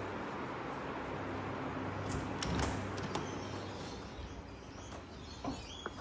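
Timber bi-fold glass doors being unlatched and folded open: a few clicks and a knock about two to three seconds in, over a steady hiss. Two short sharp squeaks come near the end.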